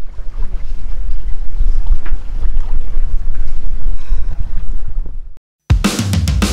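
Wind buffeting the microphone aboard a sailing catamaran at sea: a loud, gusty low rumble with boat and sea noise. It cuts off abruptly near the end, and loud rock music starts.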